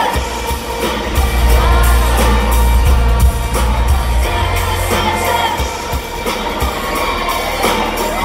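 Live pop music through a concert sound system: a female singer over a band, with a heavy bass line that drops out about five and a half seconds in.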